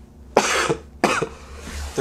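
A man coughing twice, two short harsh coughs about two-thirds of a second apart, from a chest cold: he is ill with the flu.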